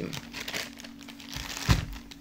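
Plastic packaging of a pack of tennis balls crinkling as it is handled and put down, with a single knock near the end.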